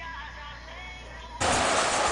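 Faint music, then about one and a half seconds in, a sudden loud rush of splashing water as children kick and thrash across a small swimming pool.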